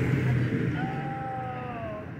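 A passing car moving away, its engine and tyre sound fading steadily, with a faint, slowly falling whine in the second half.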